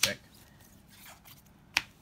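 A sleeved trading card being set down on a playmat, with one sharp click near the end as it hits the mat.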